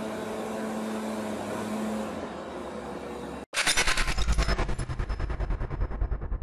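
A steady background hum and room noise, which cuts off abruptly about three and a half seconds in. It gives way to a logo sting: a rapid, loud stutter of bass-heavy electronic pulses that starts to fade near the end.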